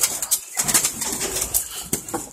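Many captive birds calling at once inside an aviary, a dense scatter of short, sharp calls.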